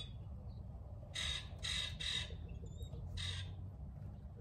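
A bird's harsh calls: three in quick succession about a second in, then one more near the end.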